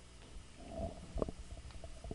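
Faint handling noise from a handheld microphone: a few soft low knocks and clicks with a faint rumble, as the lecturer moves.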